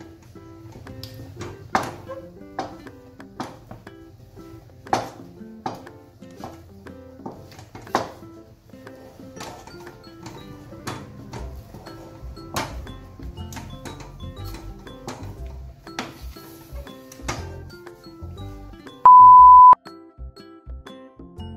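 Background music with a simple stepping melody and sharp percussive clicks. Near the end comes a loud, steady beep lasting under a second.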